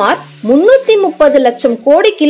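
Speech: a voice talking in quick phrases over a low steady hum.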